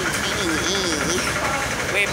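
An engine idling with a steady low rumble, under people's voices talking.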